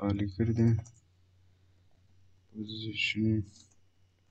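A voice saying a few words in two short bursts, with computer keyboard typing clicks as code is entered.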